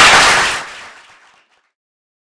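Audience applauding, the clapping fading away over the first second and a half.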